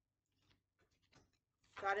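A deck of oracle cards being shuffled and handled: a few faint, short rustles and flicks of the card stock. A woman's voice starts speaking near the end.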